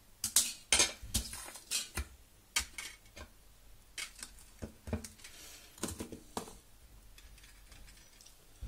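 Light metal clinks and taps as a wire mesh pot stand, a stainless windshield and a small tin can methylated-spirit stove are handled and set down on an aluminium base plate. The taps come irregularly, about a dozen, and die down in the last second or two.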